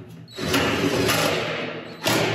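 Cordless impact driver with a magnetic nut driver running a screw into a thin steel drum, going continuously for about a second and a half from about half a second in and stopping suddenly at the end.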